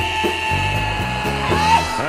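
A country song with one long, high wailing vocal note held steady over the band's backing, bending upward near the end.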